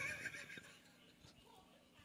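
A man's short laugh into a handheld microphone, dying away about half a second in.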